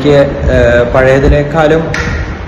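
A man speaking hesitantly in English, his pitch held level through long drawn-out "uh" fillers.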